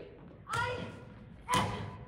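Actors' voices on stage in two short, sudden outbursts, about half a second in and again near the end, mixed with thuds.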